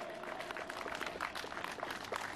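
Audience applauding: a dense patter of many hands clapping, moderately loud.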